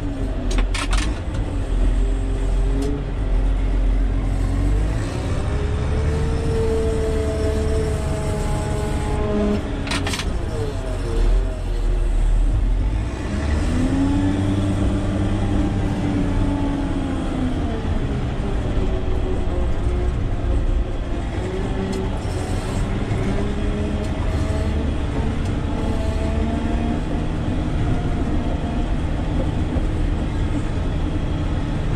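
Caterpillar 120K motor grader's Cat C6.6 six-cylinder diesel engine heard from inside the cab, working while the blade grades gravel. Its pitch rises and falls several times as engine speed and load change. A few sharp clanks come near the start and about ten seconds in.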